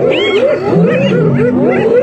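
A pack of spotted hyenas giggling and calling all at once: a dense, rapid chatter of short calls that each rise and fall, overlapping without a break, with lower drawn-out calls underneath.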